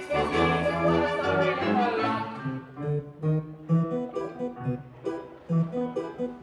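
Live pit orchestra and keyboards playing: a full held chord for about two seconds, then a lighter accompaniment of short, detached notes over a plucked bass line that pulses a few times a second.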